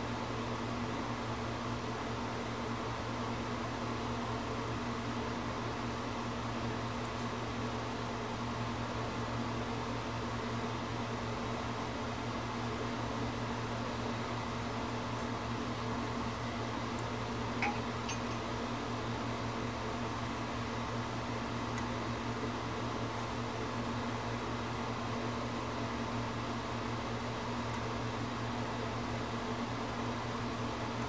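Steady electrical hum with a fan-like hiss, and one faint click about eighteen seconds in.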